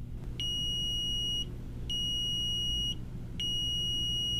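Arcom Navigator Plus leakage meter beeping three times, each beep a steady high tone of about a second with short gaps between. It is the yellow buffer alert: the meter has stored 30 minutes of leakage data while its Wi-Fi or server connection is down.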